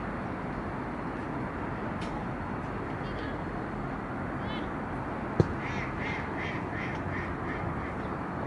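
A duck quacking: a couple of single calls, then a quick run of about seven quacks over two seconds in the second half, over a steady background noise. A single sharp click comes just before the run.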